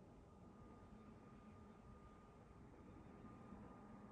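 Near silence: faint room tone with a thin, steady high tone and a low hum.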